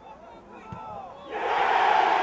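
Football crowd: a few scattered shouts, then about a second and a half in a sudden loud cheer breaks out as a goal goes in.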